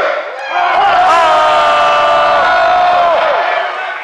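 Hacksaw Jim Duggan's drawn-out 'Hooo!' battle cry, shouted into a microphone over the PA. One long call held on a steady pitch for about three seconds, sliding down at the end, with crowd noise underneath.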